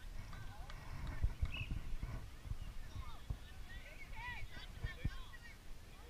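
Distant voices of players and spectators calling out across an open field, faint and scattered, over irregular low thumps and rumble on the camera's microphone.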